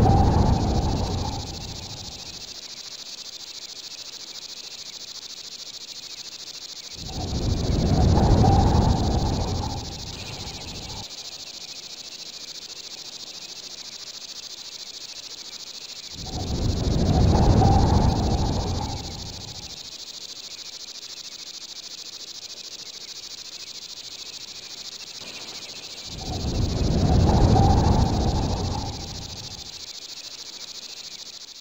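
An atmospheric soundtrack under title cards: a steady high hiss throughout, with four low rumbling swells about nine seconds apart, each building up and dying away over about four seconds.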